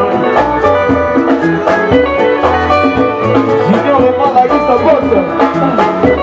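A live Congolese rumba band playing with electric guitars, bass and drums on a steady beat, and a woman singing.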